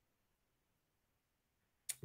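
Near silence, broken by one brief click near the end.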